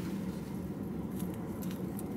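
Salt sprinkled from a torn paper packet onto cut fruit in a paper cup: a few faint light ticks in the second half, over a low steady hum inside a car cabin.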